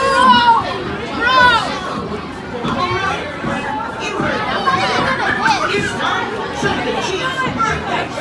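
A crowd of children chattering and calling out over one another, with one loud high-pitched exclamation in the first second and a half.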